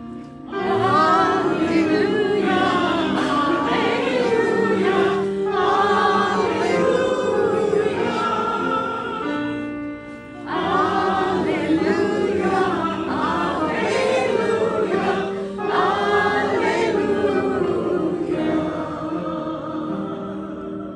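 Choir singing liturgical church music in two phrases, with a short pause about ten seconds in.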